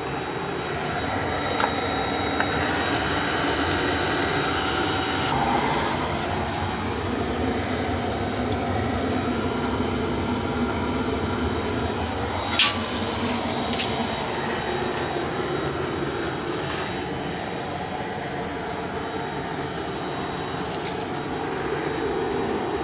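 Oil-fired boiler's burner running steadily, a constant rushing noise, with a single sharp click about twelve seconds in.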